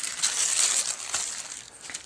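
A sheet of vellum crinkling and rustling as it is lifted off the pastel board to check the transferred lines, the noise fading away toward the end.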